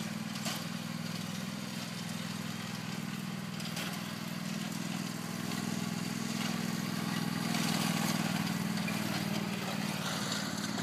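Riding lawn mower's small engine running steadily as it drives across the field, getting somewhat louder from about seven seconds in as it comes closer.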